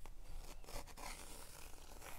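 2B graphite pencil scratching across cotton cold-press watercolour paper as a line is sketched in: faint, irregular scratchy strokes.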